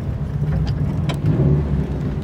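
Turbocharged rally car's engine running under way, heard from inside the cabin as a steady low drone with road noise.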